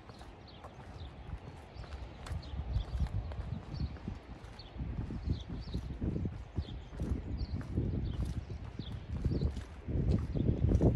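Footsteps on a paved path in a walking rhythm, with low thumps that grow louder about halfway through.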